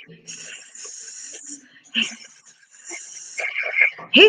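A drawn-out hissing 'sss', made twice with a short pause between: a person imitating a snake.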